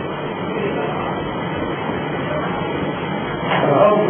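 Mini LPG transfer pump running, a steady unbroken mechanical hum and hiss while it moves gas from one cylinder to another. A man's voice comes in near the end.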